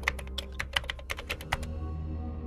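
Typing sound effect: a rapid, uneven run of key clicks that stops about one and a half seconds in, over a low steady drone.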